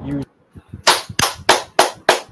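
A run of sharp hand claps, evenly spaced at about three a second, starting a little under a second in.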